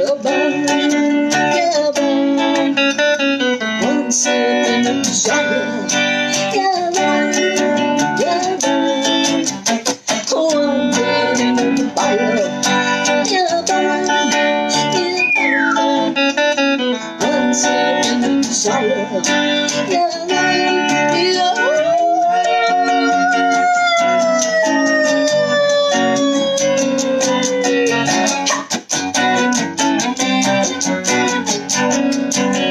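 Electric guitar played solo in an instrumental break: a busy run of picked notes and chords, with a quick string bend about halfway through and a long held note that sinks slowly in pitch over several seconds near the end.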